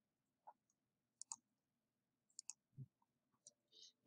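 Faint computer mouse clicks, about six of them spaced irregularly, with a soft low thump about three seconds in, over near silence.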